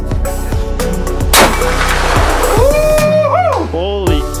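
A single loud 8mm Remington Magnum rifle shot about a second and a half in, its sound trailing off afterwards, over background music with a steady beat and singing.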